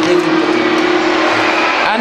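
A woman's voice speaking into a microphone, with a steady hum held underneath that stops shortly before the end.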